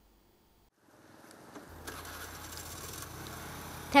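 Outdoor street ambience fading in about a second in and then holding steady: an even background noise with a low hum, the kind of distant traffic heard at a roadside.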